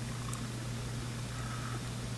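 Steady low hum over a faint even hiss: room tone, with no distinct brush strokes heard.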